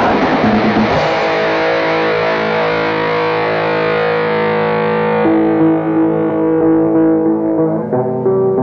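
Black metal demo recording with distorted electric guitar: dense, noisy playing about a second in gives way to held, ringing chords that grow duller toward the end.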